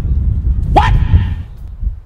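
Low buffeting rumble on the microphone, with one short, sharp, rising yelp-like cry about three quarters of a second in.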